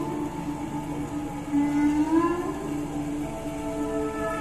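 Flute playing long held notes over sustained keyboard chords; about two seconds in one note swells louder and slides upward in pitch.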